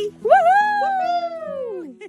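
One long, high drawn-out vocal call in a woman's voice, rising quickly at the start and then sliding slowly down in pitch for more than a second, over soft background guitar music.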